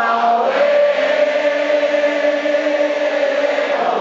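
Live rock band music from the audience of a concert hall: a sung vocal line holds one long note over acoustic guitar and sustained band chords.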